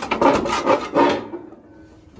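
Clear protective plastic film being peeled off a new sheet-metal fender patch panel: a few rough, rasping pulls in the first second or so, then fading.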